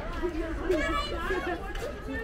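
Background chatter: people's voices talking, with no clear words.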